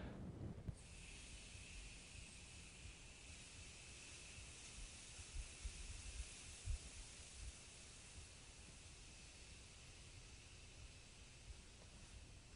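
Faint, steady hiss of breath blown out through a tightly closed fist, starting about a second in and held without a break: a long exhale against resistance, done to engage the abdominal muscles for singing breath support.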